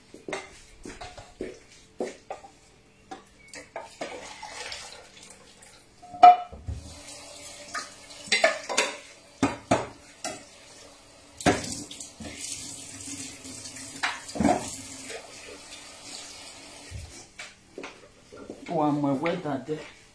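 Pots and dishes clattering at a kitchen sink, with a tap running for several seconds in the middle. One sharp clank about six seconds in is the loudest.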